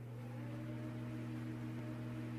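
A steady low hum made of a few held tones over faint hiss.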